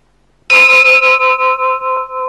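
A bell struck once about half a second in, ringing on with a wavering tone that slowly fades.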